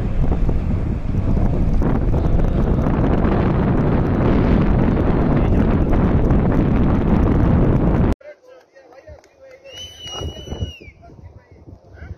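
Heavy wind buffeting the microphone, loud and steady, over an open valley. It cuts off abruptly about eight seconds in, leaving a much quieter background with a short whistle-like tone near the ten-second mark.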